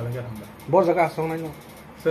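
A man speaking in short phrases in a small room.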